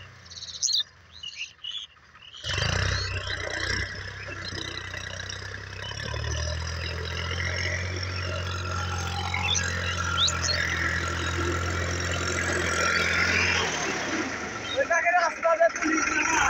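Case IH JX50T tractor's diesel engine running with a steady low drone. The drone comes up strongly about six seconds in and drops away a couple of seconds before the end, followed by a quick cluster of sharp clicks. Faint bird chirps are heard in the opening seconds.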